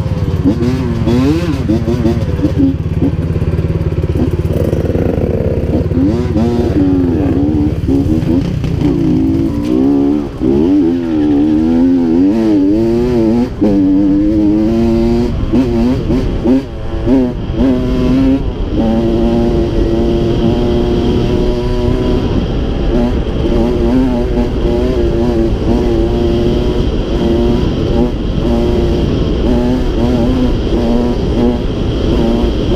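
Two-stroke Honda CR85 dirt bike engine ridden on a dirt trail. It starts as a steady low running sound with the bike stopped, then revs up and down as the bike pulls away, dropping briefly at gear changes. About two-thirds of the way in it settles to a steadier pitch at cruising throttle.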